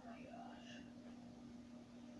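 Near silence with a steady low hum, and a faint whispered voice in the first second.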